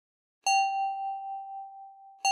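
A single bell-like synthesizer note played on a keyboard, struck about half a second in and ringing out with a slow fade.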